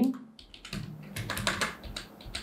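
Typing on a computer keyboard: an irregular run of quick keystrokes starting about half a second in.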